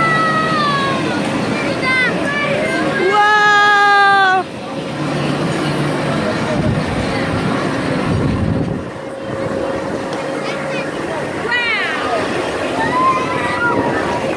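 Voices calling out over a carnival ride, including one long held cry about three seconds in that cuts off suddenly, over a steady background of machinery and crowd noise.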